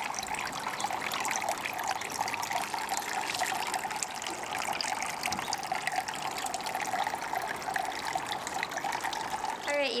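Water trickling steadily.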